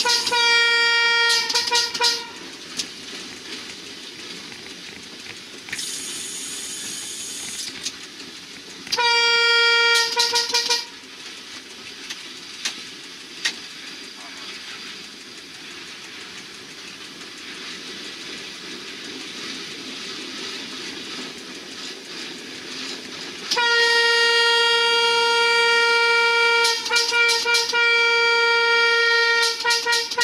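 Passenger train's horn sounding one steady note in blasts. There is a short blast at the start ending in quick toots, another short blast about nine seconds in, and a long blast from about twenty-three seconds in that breaks into rapid toots near the end as the train nears a level crossing. Between blasts the wheels run on the rails.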